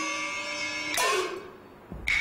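Chinese opera gongs struck in the percussion accompaniment. A hit comes about a second in, and as it fades one ringing tone bends upward while a lower tone slides down.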